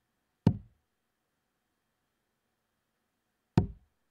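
Two darts striking a Winmau bristle dartboard, each a short, sharp knock: one about half a second in and another near the end.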